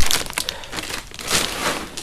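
Plastic feed bag crinkling and rustling as a homemade scoop is pulled out of it, with louder rustles right at the start and again about a second and a half in.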